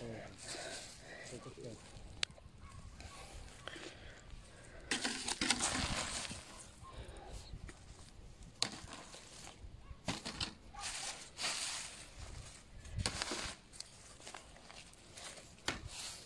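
Dry fallen leaves and weedy foliage rustling and crackling as a hand turns them over, in several short bursts with a few small clicks.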